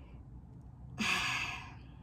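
A woman's single breathy sigh about a second in, fading over about half a second.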